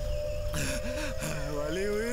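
A wounded man gasps for breath, then lets out a strained, wavering groan that slides in pitch. Under it sit a low rumble and a steady held tone.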